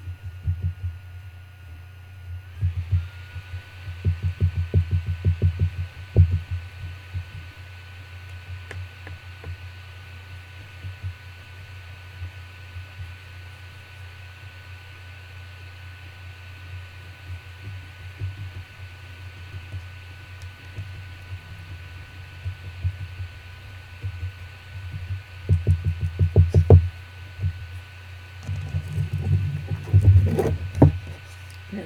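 A soft paintbrush dabbing gesso onto a textured canvas: runs of rapid, soft low thumps, about six a second, in short bursts near the start, a few seconds in, and again near the end, over a steady low hum.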